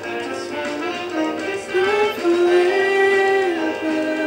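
Live jazz band music from the performance being watched, with a melody line that settles on one long held note about two and a half seconds in.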